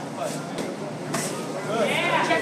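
Low voices in a gym hall with two short smacks about half a second apart near the middle, strikes landing during kickboxing sparring.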